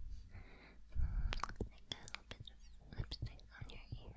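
A woman whispering close to the microphone, with scattered short soft clicks.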